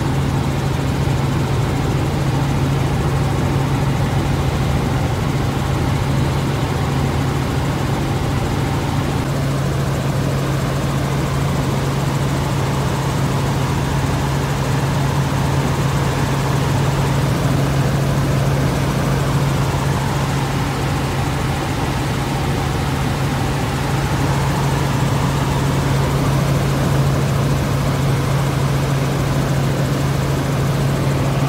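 Helicopter in flight heard from inside its cabin: a loud, steady drone of engine and rotor with a strong low hum, unchanging throughout.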